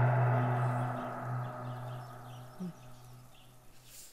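A single low gong-like tone from the film's background score, with a deep hum and a cluster of higher overtones, slowly dying away.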